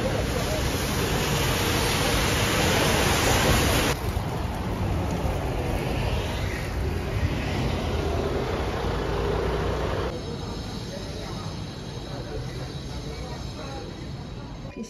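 Background ambience that changes abruptly twice. A loud, even hiss for the first few seconds gives way to quieter street noise with traffic, then to a quieter indoor hush with faint steady high-pitched tones near the end.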